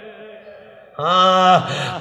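A man chanting an Arabic elegy in a lamenting voice: a brief lull, then, about a second in, a long held sung note that drops in pitch as it ends.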